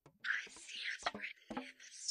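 A person whispering, reading song lyrics aloud, with a few short clicks between the words.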